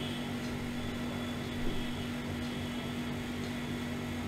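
Steady background hum of a room, with one held low tone running through it, and a faint soft knock about a second and a half in.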